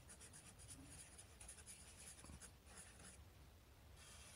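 Marker pen writing on a white board: faint, quick strokes of the felt tip that stop about three seconds in.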